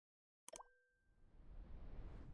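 Faint sound effect of an animated subscribe button: a sharp mouse-click with a brief tone about half a second in, then a low rushing swell that builds to the end.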